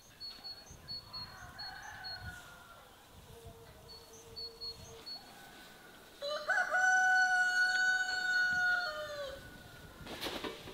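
A rooster crowing, one long call held about three seconds that falls in pitch at the end, beginning just past the middle and the loudest thing heard. A fainter call comes early on, and small birds give short high chirps in the background.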